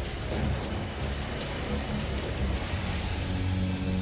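Dark, droning background music: a low rumbling, hissing texture with a low note held near the end.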